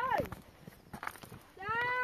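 A child calling out loudly twice: a short call at the start, then a long, held call near the end that drops in pitch as it dies away.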